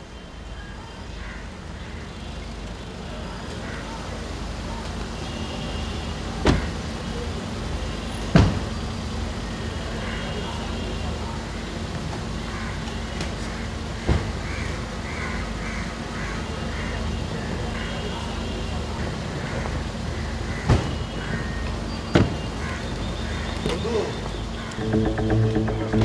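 Street ambience: a steady low traffic rumble that rises in over the first few seconds, with a faint steady hum and five sharp knocks spread through it.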